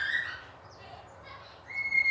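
A pause in speech: quiet room tone, with a faint, steady, high whistle-like chirp in the background near the end.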